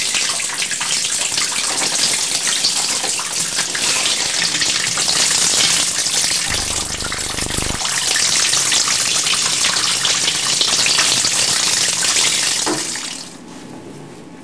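Handheld shower head spraying water onto a leather jacket, a steady loud hiss of spray that drops away fairly suddenly about thirteen seconds in.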